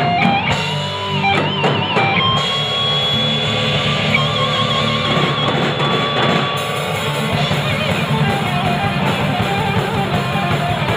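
Live metal band playing: distorted electric guitar holding long lead notes with vibrato over bass and drums.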